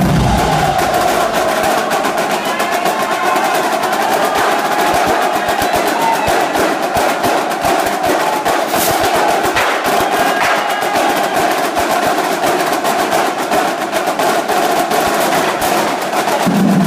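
Marching snare drums of an HBCU drumline playing a fast, dense cadence full of rolls. The bass drums drop out about half a second in, leaving the snares playing alone.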